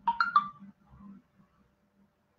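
Short electronic notification chime from a computer or phone: three quick notes in about half a second, stepping up and then slightly down.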